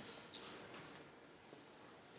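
A couple of faint, brief taps on a laptop key advancing a presentation slide, about half a second in, in an otherwise quiet room.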